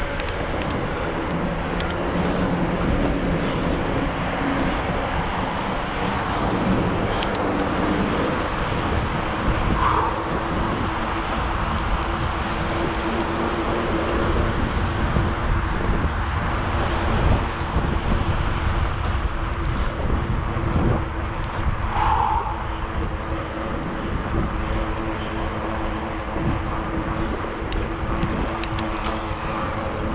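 Steady rush of wind over an action camera's microphone, mixed with the rolling noise of bicycle tyres on a paved trail, as the bike rides along at speed.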